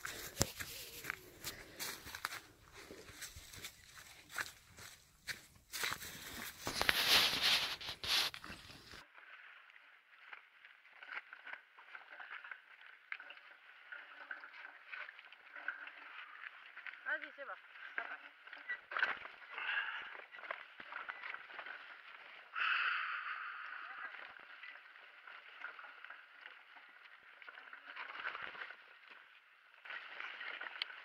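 Crunching and rustling of dry fallen leaves on a forest path, with a loud rush of noise about seven seconds in. After an abrupt change of sound at about nine seconds, a mountain bike rolls over a leaf-covered trail: muffled tyre noise and frame rattle, with scattered clicks and a louder swell of noise about three-quarters of the way in.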